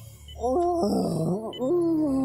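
A cartoon monster's drawn-out groaning call, starting about half a second in, holding one note and then wavering up and down in pitch, over a low background hum.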